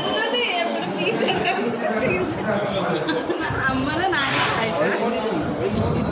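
Several people talking over one another: lively overlapping chatter of voices.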